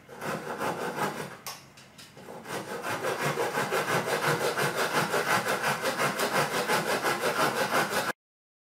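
Hand saw cutting a small wooden block: a few slow, uneven strokes as the cut is started, then from about three seconds in, quick, steady back-and-forth sawing strokes.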